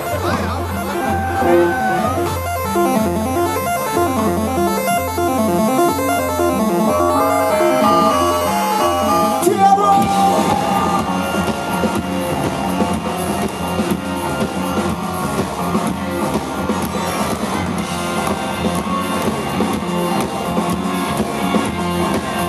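Live rock band playing a song in F: a stepping keyboard line over a pulsing bass, then the full band with drums, cymbals and electric guitars comes in suddenly about ten seconds in.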